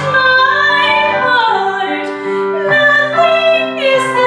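A young woman singing solo in a trained, musical-theatre style, changing notes every half second or so with some sliding between pitches, over piano accompaniment.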